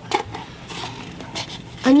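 Soft handling noise of a paper cup being worked by hand as a rubber band is pulled through it with a paper-clip hook: faint rustles and a few light clicks.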